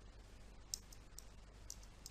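Three faint keystrokes on a computer keyboard, each a short click, about half a second apart, as text is typed into a spreadsheet cell.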